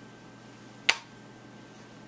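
A single sharp click a little under a second in: a shape-puzzle piece with a peg knob set down into its recess in the puzzle board.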